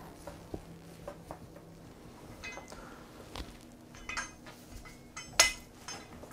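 Steel meat hook clinking and scraping as it is worked through the neck of a roe deer carcass, in a string of small scattered metal clicks. A sharper, louder metal clank comes about five seconds in as the hooked carcass goes up onto a stainless steel hanging rail.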